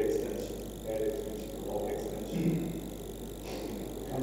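Faint, indistinct voices come and go over a steady low electrical hum.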